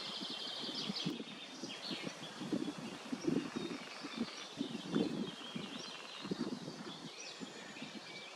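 Small birds chirping and singing in a marsh, many short calls, over a steady outdoor background with irregular low rumbles.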